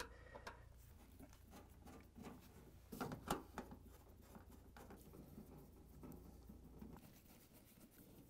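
Faint clicks and scrapes of a Phillips screwdriver backing screws out of a refrigerator's sheet-metal rear access panel, with a few sharper clicks about three seconds in. Otherwise near silence over a low hum that fades out near the end.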